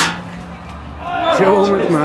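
A single sharp knock at the very start, then a loud, fairly steady person's voice close to the microphone from a little after halfway on.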